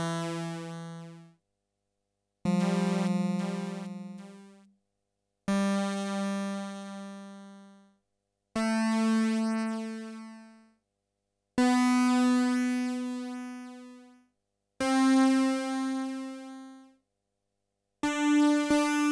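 Yamaha CS-80 analogue synthesizer playing single held notes up the white keys for multisampling. A new note starts about every three seconds, each a step higher than the last, and each fades out into a gap of silence so the sample recorder can split them.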